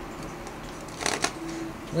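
Tarot cards being handled and shuffled, with a brief crisp rustle of cards about a second in.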